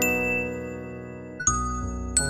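Gentle piano and bell music: a chord with a high bell tone is struck at the start and rings, slowly fading, and another note is struck about one and a half seconds in.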